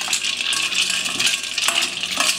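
Ice cubes clinking and rattling against a stainless steel bowl, with water sloshing, as hands rinse the salt-and-sugar cure off fish fillets in ice water.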